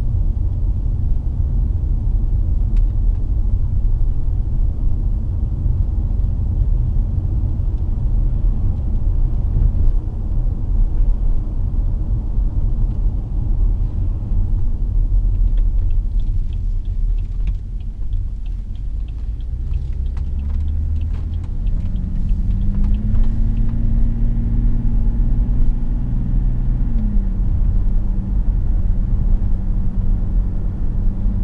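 Interior sound of a BMW 730d's 3.0-litre straight-six turbodiesel and tyre rumble while driving on a suburban road. About halfway a run of light ticks comes through, then the engine note rises as the automatic pulls away and drops back near the end.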